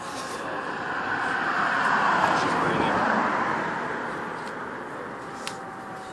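A road vehicle passing close by: a rushing traffic noise that swells to a peak about two seconds in and then fades away.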